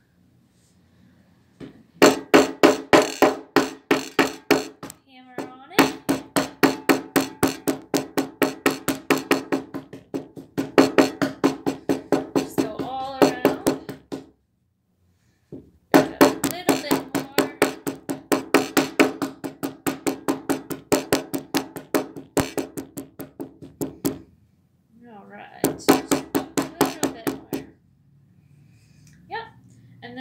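Hammer rapidly striking a piece of chalk folded inside a paper towel on a table, crushing it to powder: quick knocks about four to five a second, in runs broken by short pauses.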